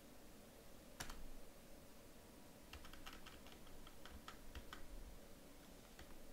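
Faint computer keyboard keystrokes: one keystroke about a second in, then a quick run of about ten keystrokes between about three and five seconds in.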